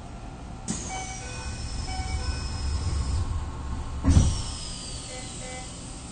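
Doors of a Keisei 3050-series train closing at a station stop. A high whine, falling slowly in pitch, starts about a second in. About four seconds in comes a loud thump, followed by another falling whine.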